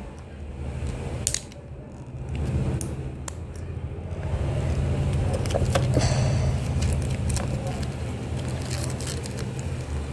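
Small plastic toy figures and plastic packaging handled on a tabletop: scattered light clicks and rustles over a steady low rumble.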